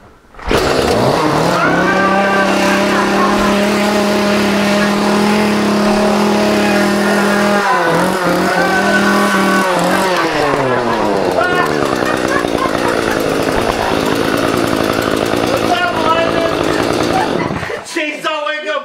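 Chainsaw bursting into loud running about half a second in, held at steady high revs for several seconds, then revved up and down until it drops off just before the end.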